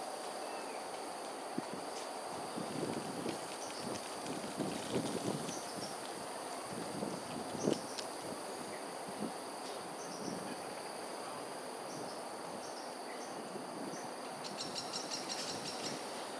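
Steady high-pitched insect drone with faint, short chirps scattered through it. A few soft low thumps come in the first half, the loudest about eight seconds in, and a fast pulsing trill comes near the end.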